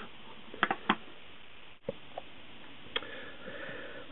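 Low steady background hiss with a few short, light clicks: two close together about a second in and another about three seconds in.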